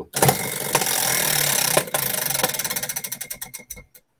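Tabletop prize wheel spinning, its rim pegs clicking past the pointer: a fast rattle at first that slows steadily into separate clicks and stops near the end as the wheel winds down.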